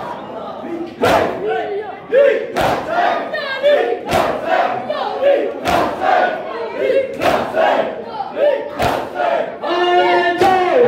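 Crowd of mourners doing matam: unison chest-beating strikes land about every second and a half, six in all, with loud group chanting of the noha between them.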